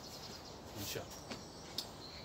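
Quiet outdoor background with a few faint, high bird chirps and a short soft click near the end.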